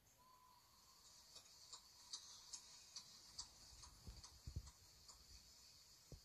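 Near silence with faint, even ticking, about two to three ticks a second.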